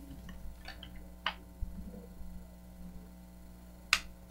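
A few short clicks and light rustles of handling at a meeting table, the sharpest one just before the end, over a steady electrical hum.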